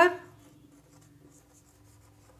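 Faint scratching of a marker pen writing on a whiteboard, over a faint steady hum.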